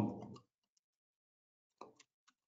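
A few faint, scattered computer keyboard keystrokes clicking as a word is typed, with a slightly louder click near the end.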